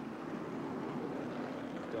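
Steady drone of race truck engines at a distance, mixed with an outdoor wind-like haze.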